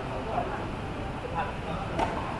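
Indistinct voices of players talking on the tennis courts, over a steady background hum.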